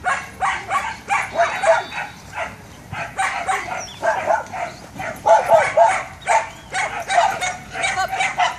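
Border collie barking rapidly and repeatedly during an agility run, about two or three short barks a second with no let-up.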